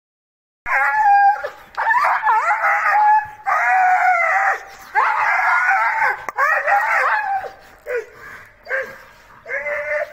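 A dog crying out in a series of long, high-pitched yelps, each about half a second to a second long and bending in pitch, starting just under a second in and getting fainter toward the end.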